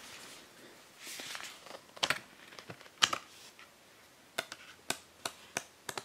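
Hands handling a cardboard Blu-ray digibook: soft paper and card rustling with scattered short clicks and taps, the sharpest about two and three seconds in and a few lighter ones near the end.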